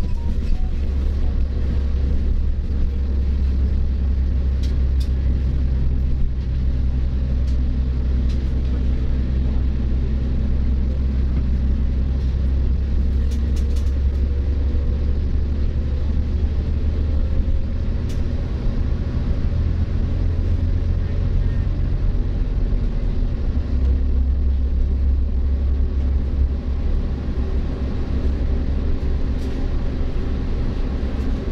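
Interior noise of a moving double-decker bus: a steady low engine rumble and road noise, the drone shifting slightly in pitch about two-thirds of the way through, with a few faint rattles.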